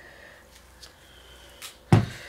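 Quiet room tone with a few faint clicks, then one sharp knock near the end, from handling the plastic paint squeeze bottle.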